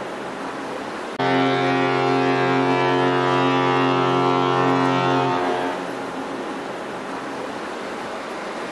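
Carnival Pride cruise ship's fog horn sounding one long, deep blast of about four seconds, starting suddenly about a second in. The blast rings on briefly as it dies away, and the fading tail of an earlier blast is heard at the start.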